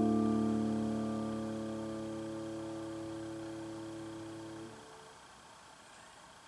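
Grand piano chord ringing and slowly fading, held until nearly five seconds in, when it is released and stops, leaving near silence with faint room tone.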